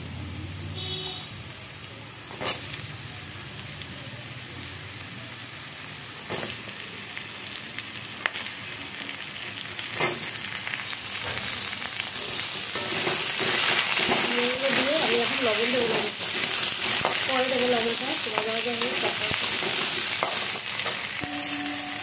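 Potato and gourd pieces sizzling in hot oil in an iron wok, with a few sharp clicks of a metal spatula against the pan. The sizzle grows louder about halfway through, once the pan is full of vegetable pieces.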